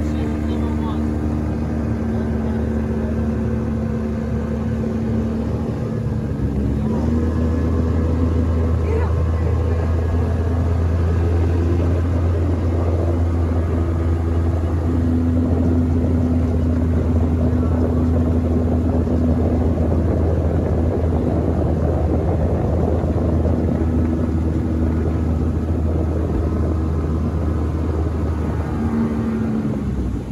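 Boat's outboard motor running under way with a steady drone. The engine note rises and grows louder about seven seconds in as the throttle opens, then drops back just before the end.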